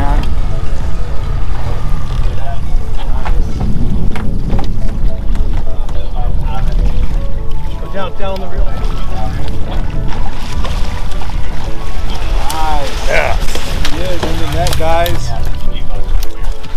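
Steady low rumble of a small fishing boat's engine with wind on the microphone, and excited voices calling out over it. There are scattered knocks and clatter as the landing net and gear are handled.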